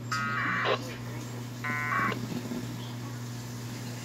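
Two short bursts of 1200-baud packet radio data tones squawking from a VHF radio's speaker, each about half a second long: one right at the start and one about two seconds in, as a Winlink message is being received. A steady low hum runs underneath.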